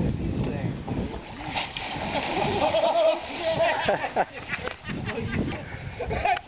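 Water splashing as a shark lunges at a fish held out over the water, with people's voices and laughter over it.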